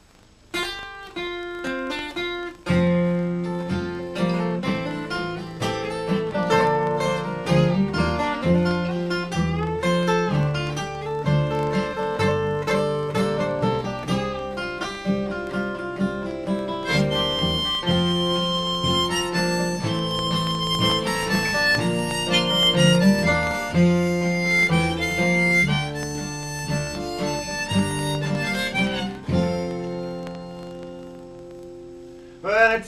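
Acoustic folk instrumental with two acoustic guitars and an upright double bass, which comes in about three seconds in, plus a harmonica played in a neck rack. The piece starts softly and fills out, with high, held melody notes through its second half.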